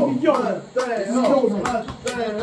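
Several men shouting and cheering excitedly over one another in celebration, with a few sharp hand claps.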